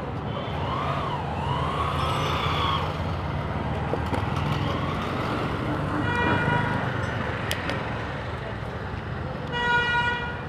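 Road traffic rumbling steadily, with a vehicle horn sounding briefly about six seconds in and again near the end. A rising-and-falling wail comes through in the first few seconds.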